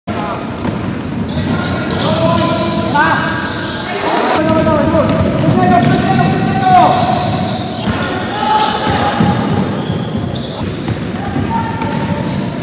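Basketball game sounds in a large gym hall: a ball bouncing on the court and short pitched calls or squeaks among the players' voices, all echoing in the hall.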